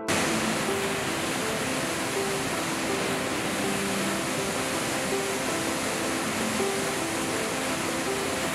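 A waterfall plunging into a rock pool, a loud, steady rush of falling water that cuts in abruptly at the start. Soft background music plays faintly beneath it.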